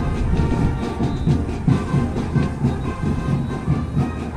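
Band music from the stadium field: held wind-instrument notes over a steady, repeating drum beat.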